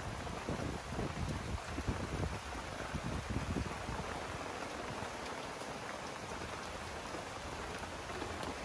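Wood fire burning under a large pot of simmering broth: a steady crackling hiss, with uneven low rumbles in the first half.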